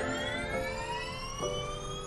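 A high electric whine slowly rising in pitch, like an electric race car's drive motor accelerating, over sustained chords of background music that change twice.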